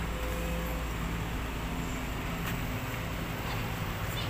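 Steady low drone of distant motor engines, with no distinct events.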